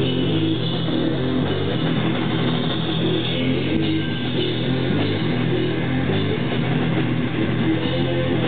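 Live heavy metal band playing an instrumental passage: electric guitars riffing over bass guitar and drum kit, dense and steady in loudness throughout, with no vocals.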